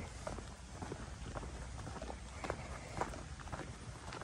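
Faint footsteps of a person walking at an easy pace, a soft step every half-second or so.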